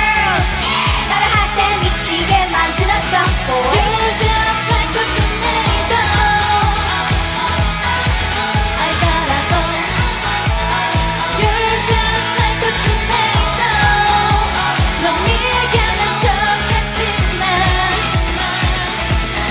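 Upbeat K-pop dance track with sung vocals over a steady driving beat.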